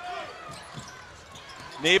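Low-level arena sound during a college basketball game: a ball bouncing on the hardwood court over faint crowd noise. A commentator's voice comes in loudly near the end.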